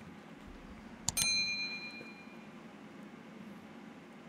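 A single bright metallic ding, like a small bell, about a second in, ringing out with a few clear high tones and fading within a second and a half.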